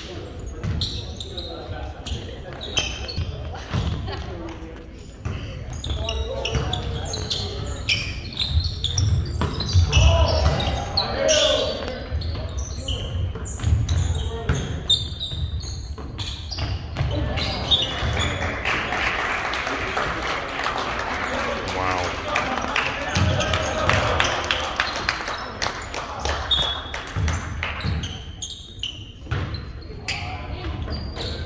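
Indoor volleyball play in an echoing gym: the ball being hit and landing in sharp smacks, with players and spectators calling out. A little past halfway there is a longer stretch of louder, busier crowd noise lasting several seconds.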